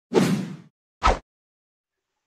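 Two whoosh sound effects from an animated intro transition: a half-second swish at the start, then a shorter, sharper one about a second in.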